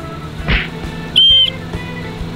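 A small plastic toy whistle blown once, about a second in: a short, shrill toot lasting about a quarter of a second.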